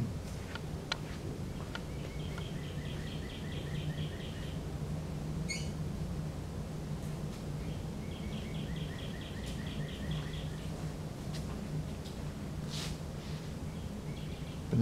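A small bird sings two rapid trills of short repeated notes, each lasting two to three seconds, with a brief rising chirp between them. Under the trills runs a steady low hum, with a few faint clicks.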